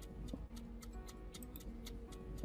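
Clock-style ticking sound effect, a rapid, even run of ticks like a running stopwatch, over soft background music.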